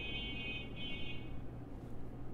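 Two faint, high-pitched electronic beeps in quick succession, the first longer than the second, over a faint steady low hum.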